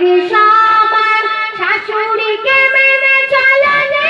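A woman singing a Bengali Islamic gojol into a microphone, holding long high notes, with a step up in pitch shortly after the start and again past the middle.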